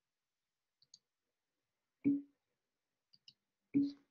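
Two sharp clicks, each with a short low ring, the first about two seconds in and the second near the end, with a few fainter high ticks between them.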